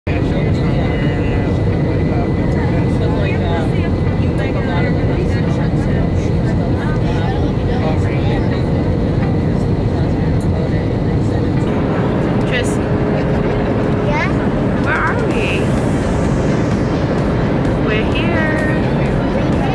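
Steady, loud engine and airflow noise of a JetBlue jet airliner heard from inside the passenger cabin during its descent on approach to land, with indistinct passenger voices over it.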